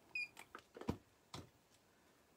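A handful of faint clicks and taps, about six in the first second and a half, from small pieces of jewelry being picked up and handled.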